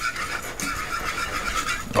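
Butter sizzling and bubbling as it melts and froths in a skillet, stirred with a wire whisk: a steady hiss. The froth shows the butter is melted and ready for the flour of a roux.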